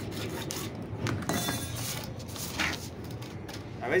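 Hacksaw blade rasping back and forth through a PVC pipe in short, irregular strokes, with light pressure on the blade.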